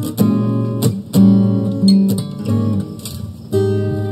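Two acoustic guitars playing strummed and picked chords, ending with a last chord struck near the end that rings on and fades.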